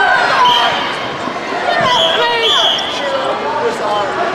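Reverberant hubbub of a large sports hall during a children's karate sparring bout: many voices talking and calling out, with dull thuds of feet and contact on the hardwood floor.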